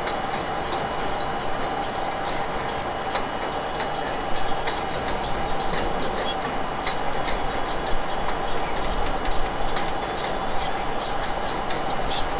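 R32 subway train running along the track, heard from inside the front car: a steady rumble with a held mid-pitched tone and irregular clicks of the wheels over the rails.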